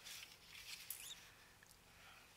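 Faint rustling and light scraping of a paper strip being picked up and laid back down on a cutting mat, mostly in the first second.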